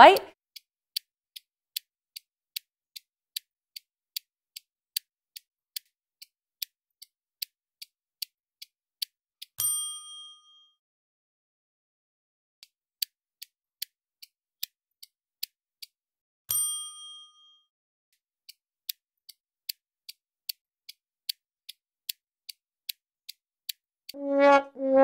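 A clock-ticking timer sound effect, about two and a half ticks a second, twice broken by a bell-like ding that rings for about a second, about ten seconds in and again past sixteen seconds. The ticking stops briefly after each ding. Each ding marks a timed check-in on the countdown.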